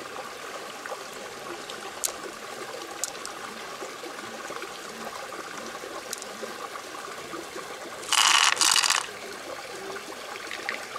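Hands working through the wet flesh of an opened freshwater mussel, with a few faint clicks and a steady trickle-like wet background. A little after the middle comes a loud rasping rush in two parts, about a second in all.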